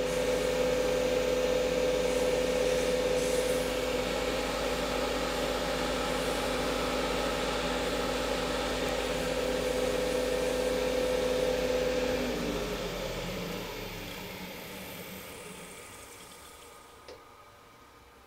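Robust American Beauty wood lathe running at high speed with a steady hum while a waxed paper towel is pressed against the spinning cocobolo stopper, adding a rubbing hiss as the wax is buffed in. About twelve seconds in the motor hum stops and the sound fades away over several seconds as the lathe spins down.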